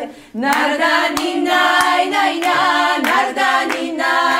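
Several women singing a Georgian song together a cappella, in harmony, with a brief breath pause just after the start and a few sharp hand claps.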